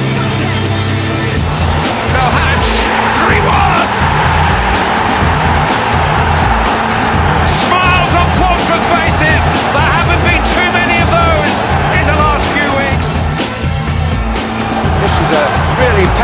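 Background music with a steady bass beat laid over the roar of a football stadium crowd, which swells about two seconds in and stays loud.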